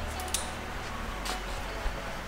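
A couple of light metallic clinks of hand tools being picked up and handled, one about a third of a second in and another just past a second, over a steady low hum.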